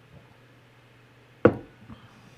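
A single sharp knock about one and a half seconds in, with a fainter knock just before the end, over a low steady hum.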